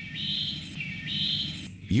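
A bird calling twice, each call high, fairly level in pitch and about half a second long, over a faint low hum.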